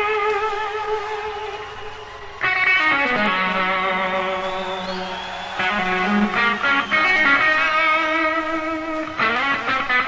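Electric guitar playing live: a sustained chord fades away, then a new chord rings out about two and a half seconds in over a held low note that bends in pitch, followed by strummed chords from about halfway through and a fresh strum near the end.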